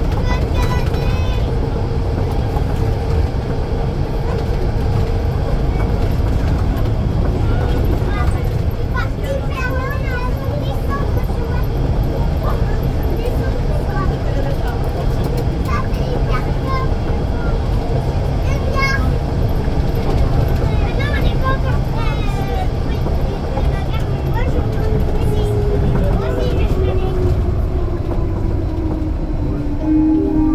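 Interior of a Rennes metro line B train running between stations: a loud, steady running rumble with a steady motor whine, which falls in pitch during the last few seconds as the train slows. Passengers chatter faintly.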